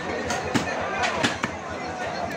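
A butcher's cleaver chopping beef on a wooden chopping block: a run of sharp chops, about two or three a second, over background voices.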